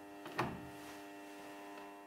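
Faint steady electrical hum, with a single sharp click about half a second in as the EMCO V13 lathe's clasp-nut lever is worked by hand.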